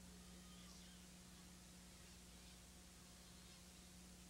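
Near silence: a faint steady hum under recording hiss.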